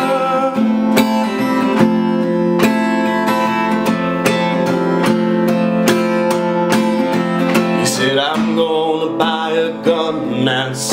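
Steel-string acoustic guitar strummed in steady, repeated chords. A sung voice comes in over the strumming near the end.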